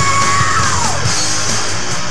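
Loud punk-grunge rock song playing, with a held yelled vocal note that slides down in pitch about a second in.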